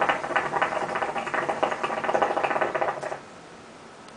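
Hookah water bubbling as smoke is drawn through the hose: a rapid, steady gurgle that stops about three seconds in.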